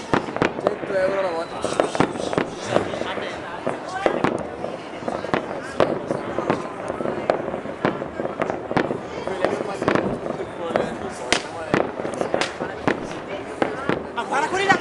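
Fireworks and firecrackers going off over a town, many sharp bangs at irregular intervals, often several a second.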